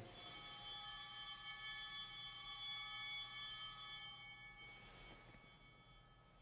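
A bell rung at the elevation of the chalice after the consecration: a clear, high ringing with many overtones that holds, then dies away about four to five seconds in.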